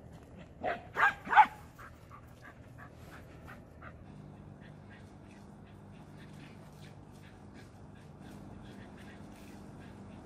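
Small dog barking three times in quick succession about a second in, followed by a string of faint short sounds.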